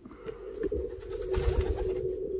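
Racing pigeons cooing in a loft, a continuous low murmur of many birds, with a few low bumps from handling about a second and a half in.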